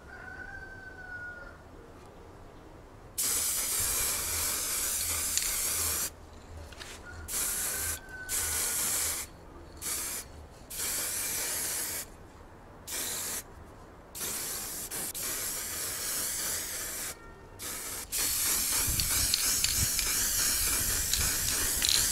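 Aerosol spray-paint can hissing in about ten bursts, some under a second and some several seconds long, with short gaps between them; the first starts about three seconds in.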